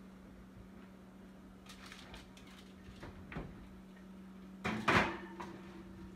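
Kitchen oven door being handled: a few faint knocks, then one loud clunk about five seconds in as the door drops open.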